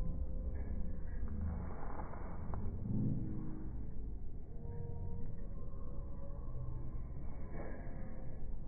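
Wind rumbling on the microphone over outdoor street ambience in a busy pedestrian square, with faint music from a busker's acoustic guitar.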